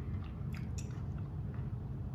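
A person chewing a mouthful of bean-and-corn salad, with a few soft mouth clicks.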